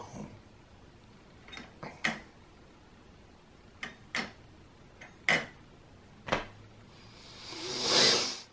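A string of light clicks and taps as a plastic three-blade drone propeller and its shaft are handled and fitted onto a prop balancer, followed near the end by a hiss that swells and peaks.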